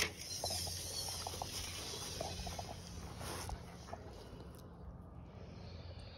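Faint rustling with scattered light clicks, slowly growing quieter toward the end.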